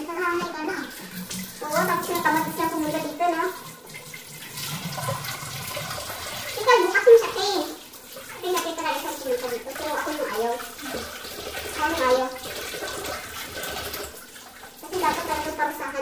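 Women's voices talking on and off over a steady rush like running water from a tap.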